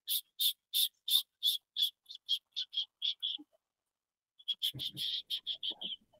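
A small animal's call: short, high chirps on one pitch. About a dozen come in a run that gradually quickens, then after a pause a second, faster run follows near the end.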